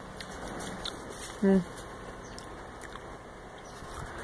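Chewing a juicy fresh tomato close to the microphone: soft, wet mouth clicks over a faint background hiss, with a short hummed 'mm' of enjoyment about a second and a half in.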